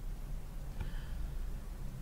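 Quiet room tone of a voice-recording room: steady low hum and hiss, with one faint brief sound a little under a second in.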